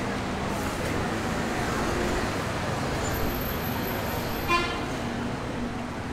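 Steady city street traffic noise from passing vehicles, with one short horn toot about four and a half seconds in.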